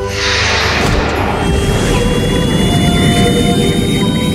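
Cartoon sound effect of a flying saucer taking off: a whoosh at the start, then a steady low rushing noise with a thin high whine that slowly rises, over background music.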